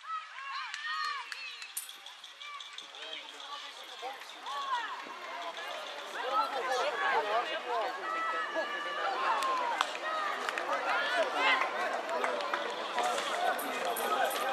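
Many overlapping voices of spectators and young players calling and shouting, none standing out as words, growing busier and louder about six seconds in.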